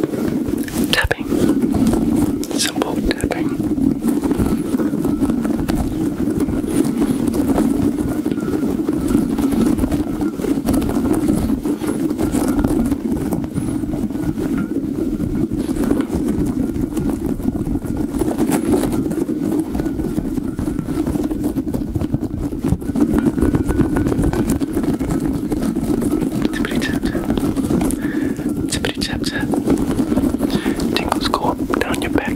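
A squishy puffer ball with rubbery strands rubbed and squeezed by hand close to the microphone, a dense continuous rustling friction sound with rapid scratchy strokes.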